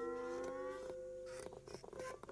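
Stage backing music: a held note with a second tone sliding slightly upward over it for about the first second. This is followed by a quick patter of short clicks or taps in the second half.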